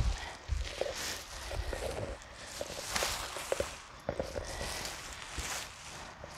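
A nylon tent rain fly rustling and crinkling in irregular bursts as it is spread and pulled over the tent, with a few short sharp clicks.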